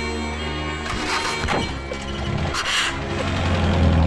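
Film background score with sustained tones, crossed by a few short bursts of noise, the longest just before three seconds in.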